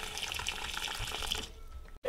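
Kitchen faucet running steadily, with water going into a steel pot in the sink, then shut off about one and a half seconds in.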